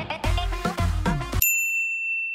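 Background music for about the first second and a half, then it cuts off and a bright sustained ding sounds: a single clear bell-like tone used as a title-card sound effect.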